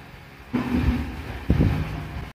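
A faint fading tail of the music, then two sudden bursts of low rumbling noise on the microphone about a second apart, the second louder.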